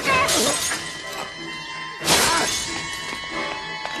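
Glass bottle thrown and shattering, one loud smash about two seconds in, over a tense orchestral film score.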